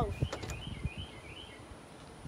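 A few soft knocks, then a bird calling faintly in the background with a few short chirps.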